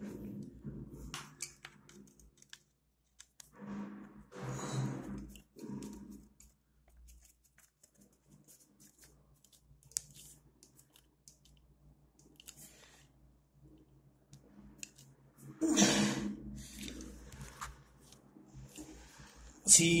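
Small clicks, scrapes and rustling of a screwdriver and stiff insulated wires being handled in a motor's terminal box. Louder stretches of handling come about four to six seconds in and again around sixteen seconds.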